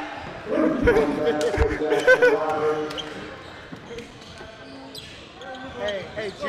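A basketball bouncing on a gym floor, with two deep thumps about a second in, under shouting and laughter from the players.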